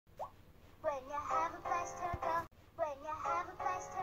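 A children's cartoon song: a character's voice singing over backing music, in short phrases with the same sung shape heard twice. It is played back on a TV and recorded off the TV's speaker.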